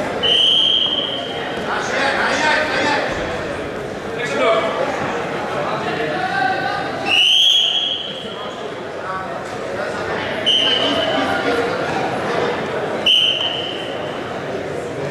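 Referee's whistle blown four times in short, steady, shrill blasts, the second one the longest. The blasts sound over a background of voices in a large hall.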